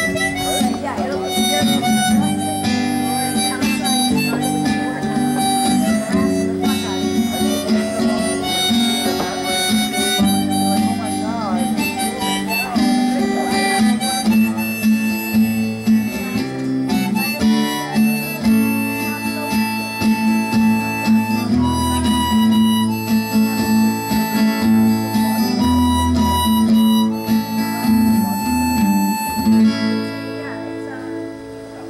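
Harmonica played in a neck rack over a strummed acoustic guitar, a solo instrumental passage of held, changing notes.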